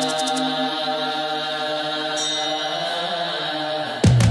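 Song intro: a low, steady, chant-like vocal drone held over a sustained musical bed, with slow shifts in pitch.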